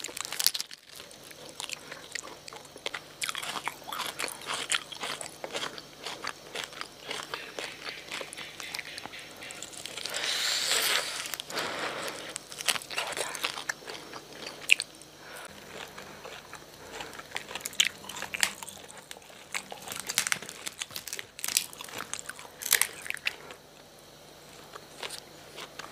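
Close-up eating sounds: roasted meat being bitten, crunched and chewed, as many irregular crisp clicks and wet smacks. A louder, noisier stretch comes about ten seconds in.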